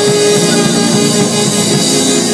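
Small live jazz group playing: saxophones holding long notes together over a drum kit.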